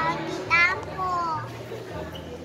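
Young children talking in high voices, a few short phrases with the loudest about half a second in.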